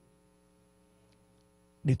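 Faint, steady electrical hum, a low drone with many fixed pitches, in a pause between a man's words. His amplified speech resumes near the end.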